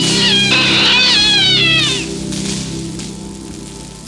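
A cat yowling, drawn-out wavering cries that slide down in pitch, as it is electrocuted biting a live electrical cable. The cries stop about two seconds in, and a steady low hum runs underneath and fades away.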